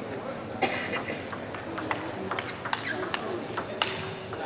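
Table tennis rally: the celluloid ball clicks sharply off the bats and the table, a quick run of separate ticks starting about half a second in, with the loudest hits near the end.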